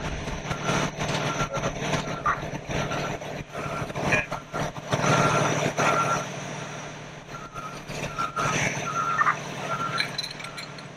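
A truck's backup alarm beeping over and over while its engine runs with a steady low hum, with scattered knocks and clatter. At the fire scene this is most likely a fire truck reversing.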